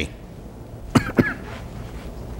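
A man coughs twice in quick succession about a second in.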